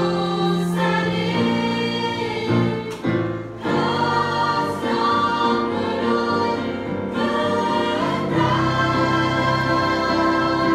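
Choir of girls and young women singing in held chords, with a brief break between phrases about three seconds in.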